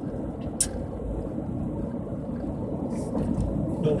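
Steady road noise inside a moving car's cabin: tyres on asphalt and the engine's low hum, with a brief click about half a second in.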